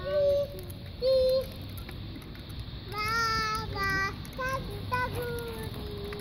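A young child singing without clear words in short, high, wavering phrases, with pauses between them.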